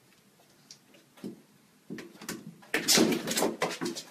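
A corgi puppy's paws and claws knocking and clicking on plastic pet steps as it climbs. A few scattered light knocks come first, then a busier, louder run in the last second and a half.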